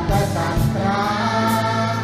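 A man singing a Thai song with a string orchestra accompanying, his voice holding long notes over steady low strings.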